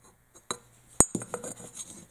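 Metal AR-style buffer tubes knocking and clinking together as a loose one is handled against the tube mounted on the rifle: a sharp click about a second in, with a few lighter clicks and knocks around it.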